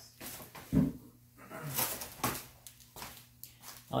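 Handling noise: a few short, scattered knocks and rustles as things are picked up and moved about, with a slightly heavier knock about a second in.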